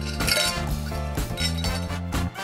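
Ice clinking against a highball glass in a short run of sharp clinks about a quarter to half a second in, over background music that plays throughout.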